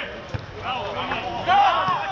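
Men's voices calling out on a football pitch during play, with a single dull thud about a third of a second in, likely a ball being kicked.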